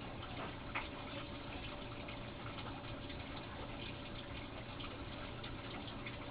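Faint, steady rush of running water, with a single small click about a second in.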